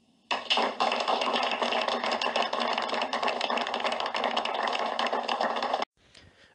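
Audience applauding, a dense crackle of many hands clapping that starts suddenly just after the start and is cut off abruptly near the end.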